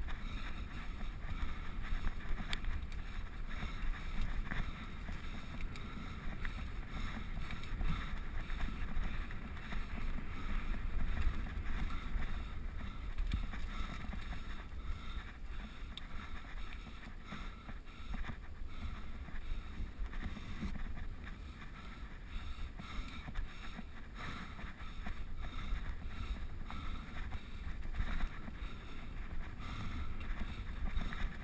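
Mountain bike ridden along a dirt forest singletrack: a steady low rumble of wind on the action-camera microphone, with tyre noise and scattered short rattles and knocks from the bike over bumps.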